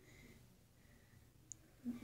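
Near silence: faint high touch tones and one short click from a smartwatch's touchscreen being tapped, about one and a half seconds in.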